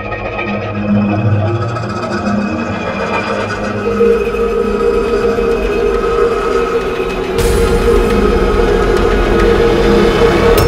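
Background music score of held tones that slowly grows louder, with a low rumble joining about seven seconds in.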